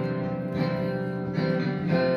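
Acoustic guitar chords ringing and sustained, an F chord in a slow C–F–E minor 7–A minor–G progression.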